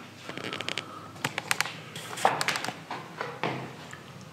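Light clicks and ticks in quick clusters about once a second, with a few soft rustles: handling noise and footsteps from someone walking with a handheld camera.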